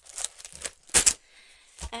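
A stack of thin craft-paper sheets handled and knocked against a tabletop to square it: a few sharp light knocks, the loudest a quick double knock about a second in, with paper rustling.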